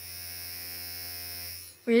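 Small electric facial massager wand buzzing steadily with a low hum from its vibration motor; the head only vibrates and does not rotate. The buzz dies away shortly before the end.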